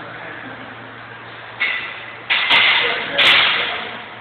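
Loaded barbell being set down and pulled off a rubber-matted gym floor during deadlift reps. A knock comes about one and a half seconds in, then louder metallic clanks of the plates a little after two seconds and again about a second later, each ringing briefly.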